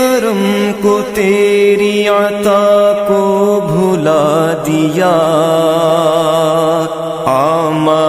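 Wordless vocal chanting of a devotional naat: long held notes with a wavering vibrato, moving to new pitches about halfway through and again near the end.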